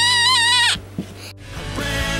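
A young girl's high-pitched yell, held for under a second over background music. After a short lull, a music track starts near the end.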